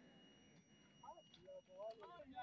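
Near silence for about the first second, then faint, distant human voices in short snatches.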